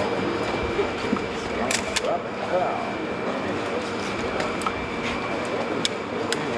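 Overlapping, indistinct chatter of a crowd of people, with a steady faint hum underneath and a few sharp clicks about two seconds in.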